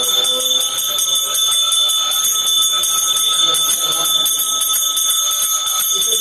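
Temple bell rung rapidly and without a break during the aarti lamp-waving worship: a steady, high ring. A voice chanting fades out in the first second.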